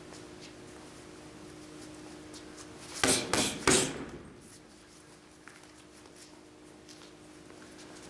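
Boxing gloves landing a one-two-three combination on a heavy punching bag: three quick thuds within under a second, about three seconds in (jab, right hand, left hook), over a steady low hum.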